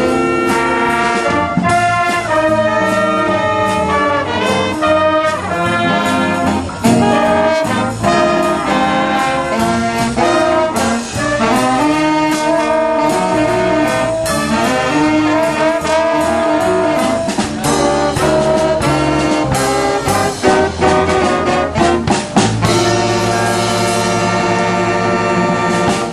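School big band playing a jazz number: trumpets, trombones and saxophones over a drum kit, going into sustained notes near the end.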